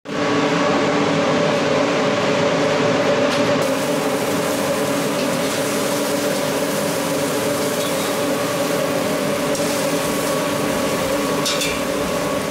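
Steady droning hum of kitchen ventilation running over a smoking charcoal grill, with an even hiss beneath it; the sound changes slightly a little under four seconds in.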